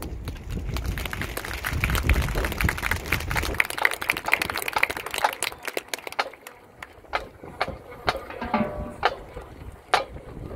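Audience clapping in the stands: dense at first, then thinning after about five seconds to a few scattered claps.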